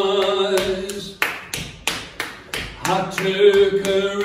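A man singing unaccompanied holds a long note that ends about half a second in, and starts the next sung phrase near the end. Through the pause a steady beat of sharp taps, about three a second, keeps time.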